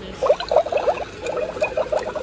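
Grave & Bones animated LED skeleton piranha decoration playing its sound effect once triggered: a rapid run of short rising chirps, about eight to ten a second, beginning a moment in.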